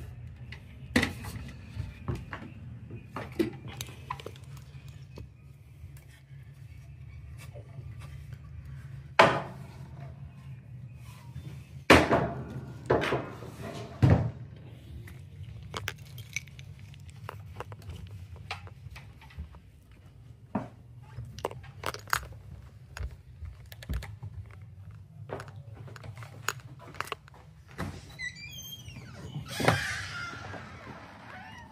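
Irregular thumps and clicks of footsteps and camera handling while walking down carpeted stairs, over a steady low hum. A louder knock comes at the very end as the door out of the house opens.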